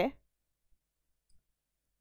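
Near silence with two faint clicks about half a second apart, from a stylus tapping the touchscreen board.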